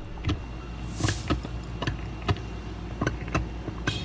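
A tiny crystal microphone inside an ear canal, picking up a steady low rumble with irregular sharp clicks and scratchy rustles of handling against skin; a louder scratchy rustle comes about a second in and another near the end.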